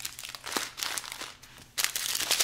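Small clear plastic zip bags of resin diamond-painting drills crinkling as they are handled and set down, with a louder rustle near the end.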